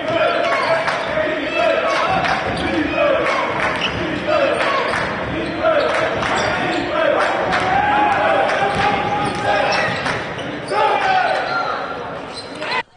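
A basketball bouncing on a hardwood gym floor during live play, over voices calling out, with a hall echo.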